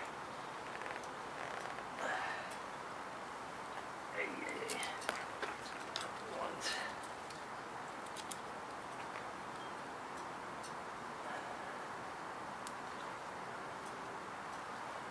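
A few faint clicks and rustles of wires and alligator clips being handled and connected, over a steady quiet background hiss.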